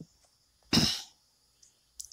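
A person coughs once, a single short sharp burst just before the middle, with faint clicks at the start and end.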